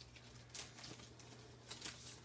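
Faint rustling of a clear plastic bag, with a few soft ticks, as sheets of foam adhesive dimensionals are slid out of it by hand.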